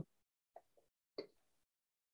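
Near silence on a video-call line, broken by two faint, very short sounds about half a second and just over a second in.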